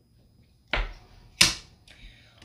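Handling noise from swapping paint swatch tags on a table: a short knock about a second in, a sharper click just after, and a faint tick near the end.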